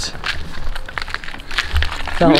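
Irregular small clicks and scrapes of broken concrete rubble being shifted by hand, over a low rumble.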